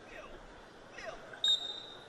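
A referee's whistle blown once, a short, steady, high tone about one and a half seconds in, restarting the wrestling match, over a faint crowd murmur.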